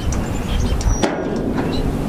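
Wind rumbling on a handheld microphone outdoors, with a brief crackle about a second in.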